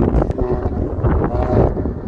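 Wind buffeting the microphone, a heavy low rumble, with faint indistinct pitched sounds behind it.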